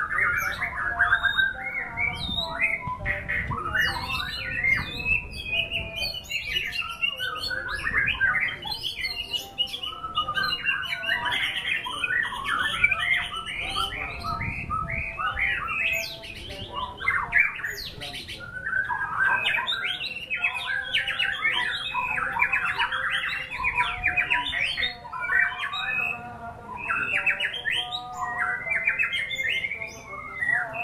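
White-rumped shama (murai batu) singing a long, unbroken song of fast, varied phrases and rapid repeated notes.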